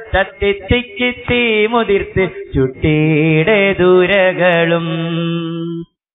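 A solo voice singing a winding, ornamented, chant-like melody unaccompanied, settling into a long held note about halfway through, then cut off abruptly just before the end.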